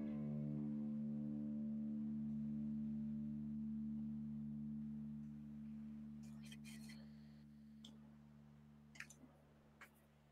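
A held low chord of background music ringing on and slowly fading away, with a few faint light taps near the end.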